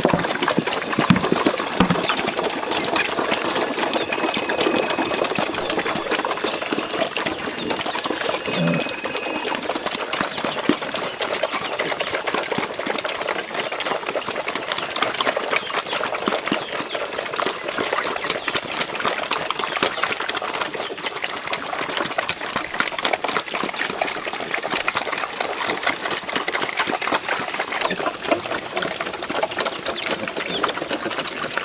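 A herd of pigs and piglets eating wet mash from troughs: a continuous, dense clatter of chomping, smacking and slurping.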